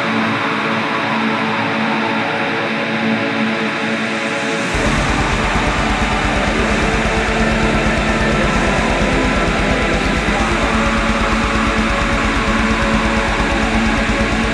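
Atmospheric black metal: a dense wall of distorted guitars. About five seconds in, the bass and drums come in under them with a rapid, steady kick-drum beat, and the music gets a little louder.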